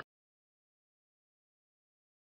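Silence: the sound track is blank.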